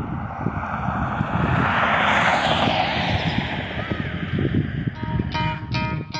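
Wind buffeting the microphone over outdoor traffic noise, with a vehicle passing that swells and fades about two seconds in. Guitar music comes in near the end.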